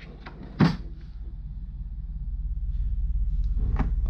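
A sharp knock about half a second in, with a few fainter clicks: a hand handling the compression tester's metal adapters and hoses in their hard plastic case. A steady low hum sits underneath and grows louder toward the end.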